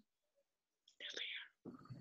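Near silence for about a second, then a faint, short whispered spoken answer, most likely a child softly answering "bear" over a video-call connection.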